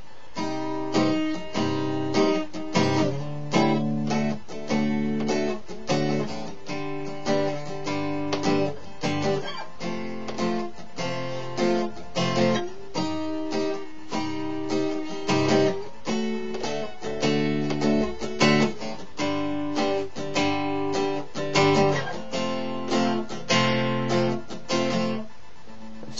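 Epiphone EJ-200 jumbo steel-string acoustic guitar strummed in a steady rhythm, playing the interlude's chord sequence, starting with C major seven, then C minor seven.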